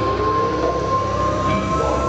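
Amplified electric guitars droning at the start of a rock song: a steady, high, held feedback-like tone with a lower note sliding slowly upward beneath it.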